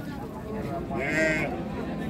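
A sheep bleats once: a single wavering call about a second long in the middle.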